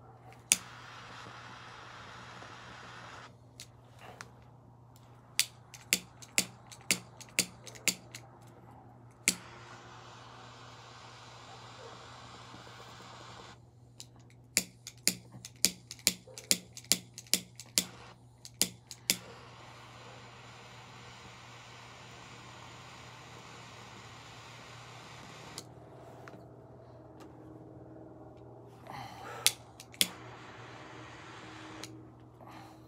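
Cigar lighter clicked over and over in two runs of about eight to ten clicks each, roughly two a second, to light a cigar. A steady hiss fills the stretches between the runs.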